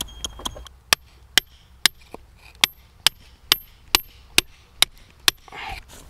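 A hand hammer or pick striking rock again and again, about ten blows at roughly two a second, each with a short high metallic ring, as rock is chipped away to free quartz crystals.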